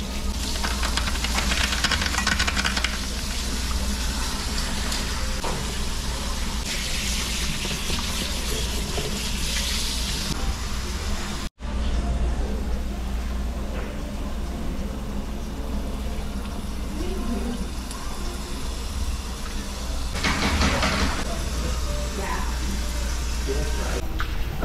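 Water hissing from a hand-held spray nozzle in three bursts as it rinses a wet toy poodle, over a steady low hum.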